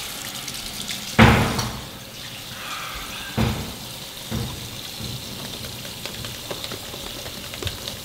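Bathroom sink tap running water. A few short, louder splashes break through, the loudest about a second in and two smaller ones a few seconds later.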